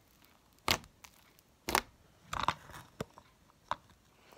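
Thick slime being squeezed and pressed by hand, giving about five sharp pops and crackles spread over a few seconds.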